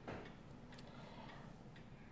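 A few faint, separate clicks over quiet room tone, typical of a computer mouse button being clicked while selecting a file.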